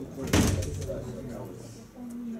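A single loud thump about a third of a second in, with a brief ringing tail, over low background voices in a room.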